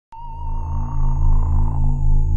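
Synthesized logo sting for a record label, cutting in suddenly: a held, slightly wavering high tone over a low, pulsing drone.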